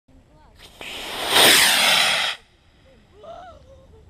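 Model rocket motor igniting and lifting off: a hiss builds into a loud rushing roar for about a second, falling in pitch as the rocket climbs away, then cuts off suddenly.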